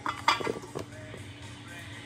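A few short clinks and knocks in the first half-second, another just under a second in: a small dish and cubes of cold butter knocking against a stainless steel stand-mixer bowl as the butter is tipped into the flour.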